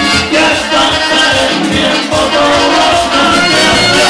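Live merengue band playing at full volume, with a steady beat in the bass and percussion.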